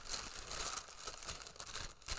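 Orange tissue paper being handled and unfolded, crinkling and rustling throughout with quick crackly bursts.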